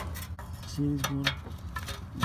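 Light metallic clinks of a deep socket and wrench being fitted to an exhaust flange bolt, with a short hummed voice sound a little under a second in, over a steady low hum.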